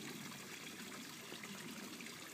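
Faint, steady hiss of outdoor background noise, with no distinct events.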